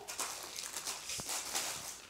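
Plastic candy and snack wrappers crinkling and rustling as packets are picked up and dropped onto a pile, with small ticks and one sharper tap a little past a second in.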